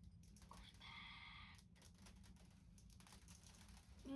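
Near silence with faint, scattered light clicks and taps of hands handling mini marshmallows on the table, over a low steady hum.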